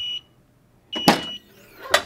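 Hotronix Auto Clam heat press timer beeping out its last seconds: one short, high beep at the start, then about a second later a longer final beep as the press releases and opens with a loud burst of noise, and a knock near the end.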